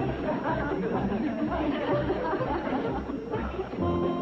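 Studio audience laughing and murmuring, a sitcom laugh track, many voices at once.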